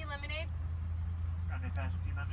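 Car engine idling, a steady low hum heard inside the cabin.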